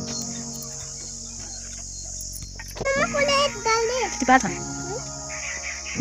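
Insects chirring in a steady high drone, over background music. A child's high voice calls out briefly about three seconds in.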